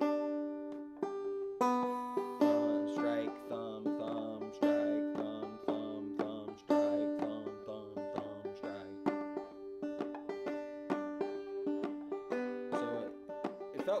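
Open-back banjo played clawhammer style: a steady, bouncy run of plucked notes, the thumb dropping onto a melody string in a double-thumbing pattern that skips the brush strokes.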